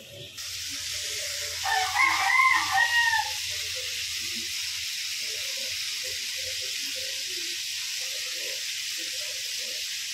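Pork pieces sizzling steadily in hot oil in a frying pan. A rooster crows once, loudly, about two seconds in, for about a second and a half.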